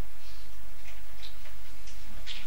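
Steady low electrical hum on the recording, with a few faint, irregularly spaced ticks.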